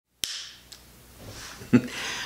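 A single sharp click with a short fading room echo, followed about half a second later by a much fainter click. Near the end comes a brief hum of a man's voice.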